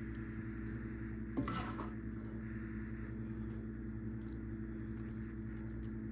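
A steady low electrical hum, with one brief utensil sound about a second and a half in.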